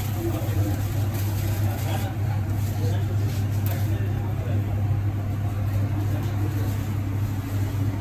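Steady low mechanical hum of commercial kitchen equipment, with faint voices in the background.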